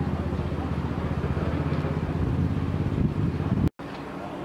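A motor vehicle engine running at a steady idle, a low even hum. It breaks off abruptly near the end, at an edit.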